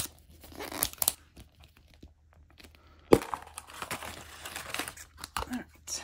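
Plastic wrapping torn and crinkled by hand as a 5 Surprise toy capsule is unwrapped, in irregular rustling bursts, with a sharp knock about three seconds in.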